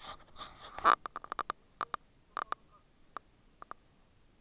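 A short rustle, then a quick run of sharp clicks and knocks. The loudest comes about a second in, six or so follow in rapid succession, and a few scattered ones come near the end.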